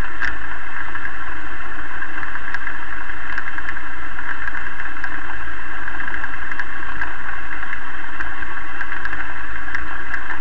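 An engine running steadily close to the microphone, a loud, unbroken drone with a low rumble and a few faint ticks.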